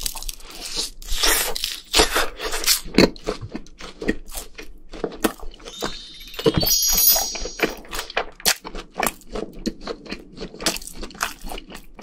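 Close-miked biting and chewing of a fried rice cake and sausage skewer (so-tteok) coated in seasoning powder, heard as a run of irregular clicks and crunches. About six seconds in, a brief twinkling sound effect plays over the chewing.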